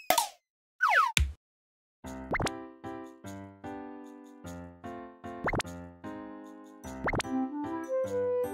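Short cartoon sound effects with falling pitch in the first second or so, then, from about two seconds in, cheerful children's background music with sustained notes and a quick rising swoop every few seconds.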